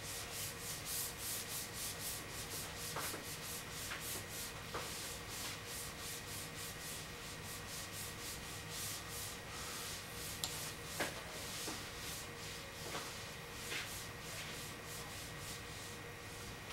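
An eraser rubbed back and forth across a whiteboard, wiping off marker writing in quick, even strokes, about three a second.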